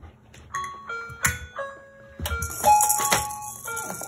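A simple bell-like melody played note by note, punctuated by sharp clicks from plastic toy castanets. From about two seconds in, a toy maraca is shaken, adding a loud, dense rattle and a few heavier knocks.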